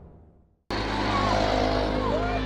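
A logo whoosh fades out, then the sound cuts in abruptly about two-thirds of a second in: a dirt bike's engine running loud as it speeds past, over the noise of a crowd of onlookers.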